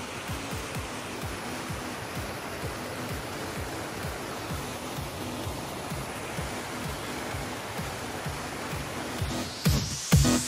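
Steady rush of a waterfall and rapids pouring over rocks, with an electronic dance track's kick drum faintly underneath at a steady beat.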